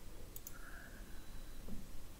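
Two quick computer mouse clicks in close succession about half a second in, over faint room hiss.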